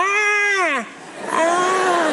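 A man's drawn-out wailing yell, voiced twice, each call rising and then falling in pitch, acting out a newborn baby screaming. The first yell is loud and lasts under a second; the second starts about halfway through. Audience laughter rises beneath the second yell.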